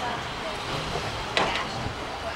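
Indistinct voices of people nearby over steady outdoor street noise, with one sharp knock about one and a half seconds in.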